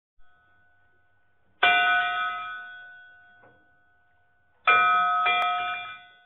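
A bell struck twice, about three seconds apart, as the sound for an opening logo. Each stroke rings and fades out.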